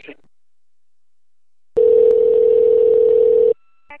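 Telephone ringback tone: one loud, steady ring of nearly two seconds, starting a little before halfway through. It is the sign that an outgoing call is ringing at the other end. It cuts off sharply, and a faint higher tone and a click follow just before the line is answered.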